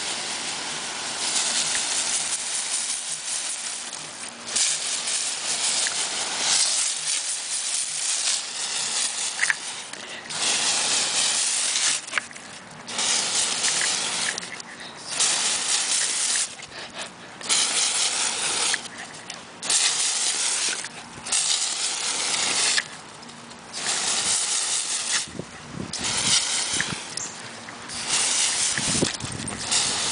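Garden hose spray nozzle hissing as it shoots a jet of water, in about a dozen bursts of one to three seconds with short breaks between them.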